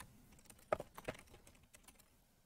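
Computer keyboard being typed on: a quick run of faint keystrokes that starts about half a second in.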